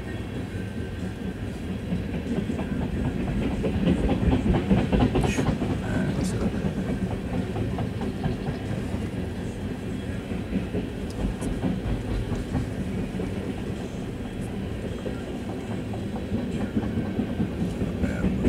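Freight train of empty tank cars rolling past, its wheels clicking steadily over the rail joints, heard from inside a car.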